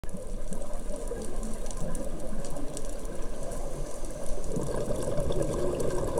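Muffled underwater bubbling and rumble of a scuba diver's regulator exhaust, heard through a camera's waterproof housing, growing louder about two-thirds of the way in.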